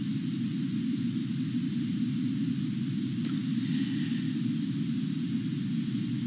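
Steady background noise of the recording: a low hum-like rumble with a faint hiss above it, broken once by a short sharp click a little over three seconds in.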